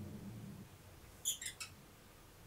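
Three or four quick, high-pitched plastic clicks and squeaks about a second in, as a hex key works at the 3D printer's extruder to free the part-cooling fan shroud. A faint low hum stops about half a second in.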